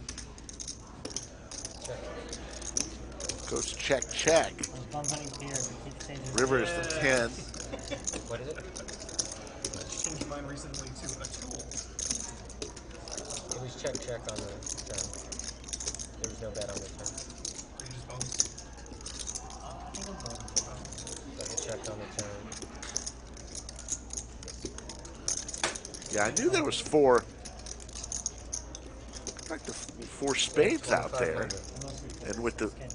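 Poker chips clicking and clattering, handled and riffled in players' fingers, with many small clicks throughout. Low voices are heard a few times.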